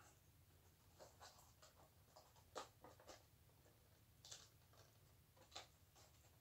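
Faint handling sounds of a plastic DVD case being turned over and opened: a few scattered soft rustles and small clicks.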